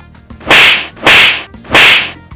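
Three loud whip-like swish sound effects, about two-thirds of a second apart, each a short rush of noise that fades quickly.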